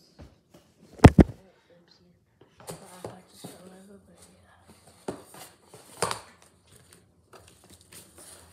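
Packaging being handled as a reusable drink bottle goes back into its box: a loud double knock about a second in, then rustling with scattered clicks and knocks, the sharpest near five and six seconds.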